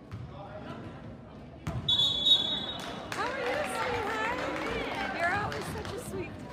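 Basketball game in a gym: a sharp knock, then a referee's whistle blown once for about a second, followed by shouting from many voices in the crowd and on the court.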